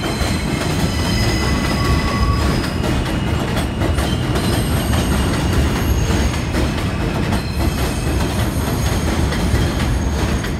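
New York City Subway R160 train running past on elevated track, a steady loud rumble of wheels on rail, with thin high-pitched wheel squeals coming and going.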